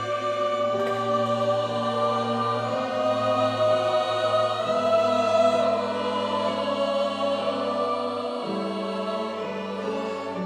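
Mixed choir singing with a string ensemble: sustained chords over a long-held bass note, the harmony shifting near the end, sounding in a large church.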